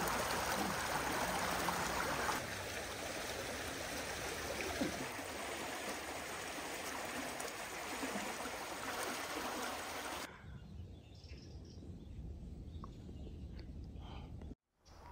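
Water flowing fast along a narrow stone channel, a steady rushing. About ten seconds in it gives way to quieter woodland ambience with a few faint high chirps.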